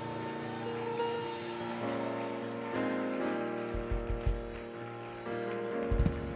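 Church musician's keyboard sustaining chords behind the preaching, moving to a new chord a few times. A few low bass notes sound near the middle.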